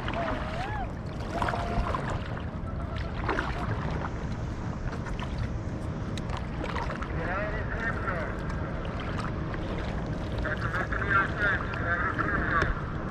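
A steady low rumble of wind and water noise on the microphone over open water. Faint, wavering voices or calls come through around seven seconds in and again near the end.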